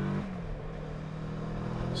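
Kawasaki Versys 650 parallel-twin engine heard from the saddle while riding, mixed with rushing wind and road noise. The engine's steady note drops away shortly after the start, leaving mostly wind and road noise, and comes back near the end.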